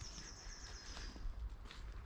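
A faint, high bird trill that slowly falls in pitch and stops about two-thirds of the way in, over soft footsteps on the woodland floor.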